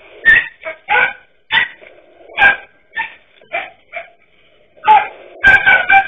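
Small dogs barking sharply at a snake, about a dozen short barks with pauses between them and a quick run of barks near the end.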